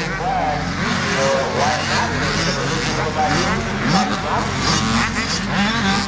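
Several motocross dirt bike engines revving up and down as they ride the track, over a steady low engine hum.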